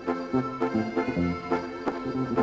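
A live Mexican regional band playing an instrumental passage between sung verses of a corrido. A bass line steps from note to note under held chords, with a few drum hits.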